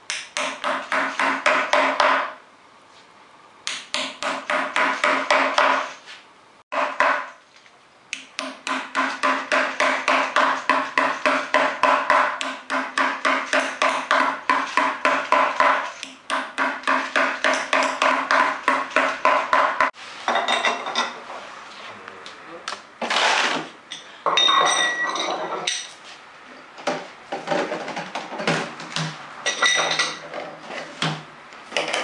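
Byō tacks being hammered into the leather head of a taiko drum: rapid runs of taps, about four to five a second, with short pauses between runs and a low ringing tone from the drum under them. From about two-thirds of the way in, the taps give way to sparser, irregular metallic clinks and knocks.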